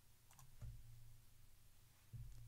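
Near silence: room tone with a few faint clicks about a third of a second in, then a soft low thump.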